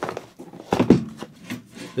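Cardboard radiator boxes and parts being handled on a desk: rustling and light knocks, with a cluster of sharper knocks a little under a second in.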